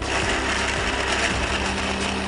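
Countertop electric blender switching on and running steadily at high speed, puréeing chunks of watermelon and raw vegetables into a liquid gazpacho.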